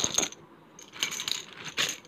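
Small plastic letter tiles clattering together inside a plastic zip-lock bag as the bag is handled, with the bag crinkling. There are bursts of clicking at the start and from about a second in, and a sharper click near the end.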